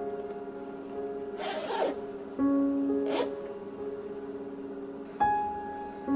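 A zipper on a denim bag being run along twice, a longer scratchy stroke about a second and a half in and a short one about three seconds in, over calm piano background music.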